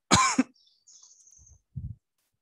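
A man coughs once, a short loud cough just after the start, followed near the end by a brief low throaty sound.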